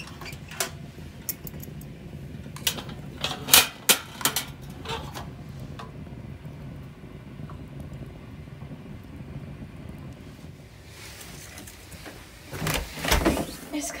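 Metal clanks and knocks from a wood-burning rocket stove being handled at its firebox, over a steady low rumble of the wood fire burning. Near the end comes a rush of noise and a few heavy thumps.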